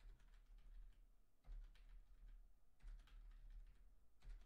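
Faint typing on a computer keyboard: irregular, scattered key clicks.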